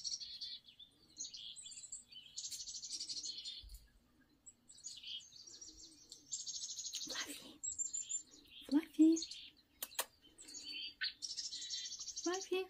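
Small birds chirping and trilling in short high bursts, played through a TV speaker. Two brief, louder, lower sounds come about three-quarters of the way through.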